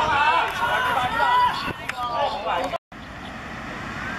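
Several voices shouting excitedly over one another as a player runs at goal. Partway through, the sound drops out briefly, then comes back as a quieter, steady outdoor hiss with faint voices.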